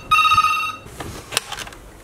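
Hotel room desk telephone ringing: one electronic ring of steady tones, under a second long, then a couple of clicks.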